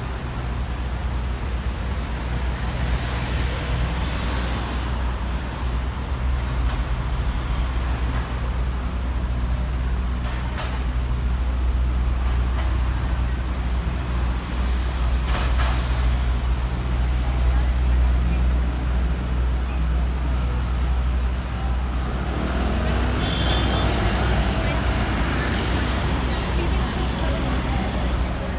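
Traffic on a busy city street: cars and a taxi passing and pulling away from the lights, over a steady low rumble.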